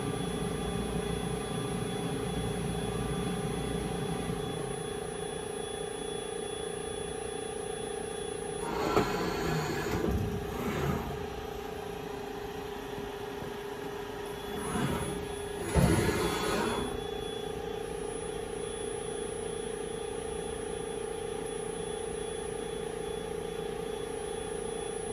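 Kellenberger Kel-Varia CNC universal cylindrical grinder running with a steady hum, broken by four short whirring axis moves whose pitch dips and rises. These are the X and Z slides traversing as the machine repeats a positioning routine, checked for repeatability against a dial test indicator.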